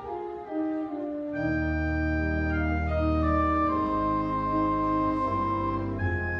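Church organ playing a slow prelude: long held chords with a melody line on top. It is thin for the first second or so, then fuller.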